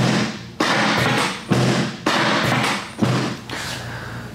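Chiropractic drop table with its section popping up and dropping under the hip during an adjustment. About five sharp thuds in four seconds, each followed by a brief rush of noise.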